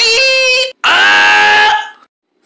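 A voice giving two long, held play-acting cries in a row, with a short break between them.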